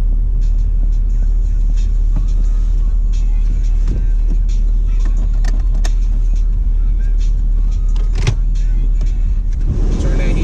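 Jeep's engine idling, a steady low rumble heard from inside the cabin, with a few light clicks about halfway through and near the end.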